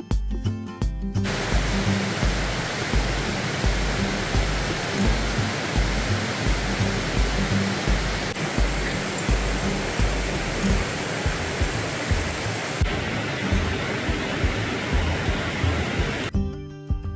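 Rushing creek water, a loud steady hiss, over background music with a steady low beat; the water comes in about a second in and cuts off suddenly.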